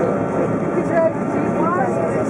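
Steady airliner cabin noise from the engines while the aircraft rolls along the runway, with indistinct voices of passengers talking over it.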